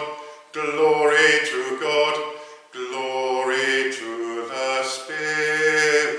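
A man's unaccompanied voice singing a chant-like liturgical setting in slow, held phrases of a second or two each, with short breaths between them.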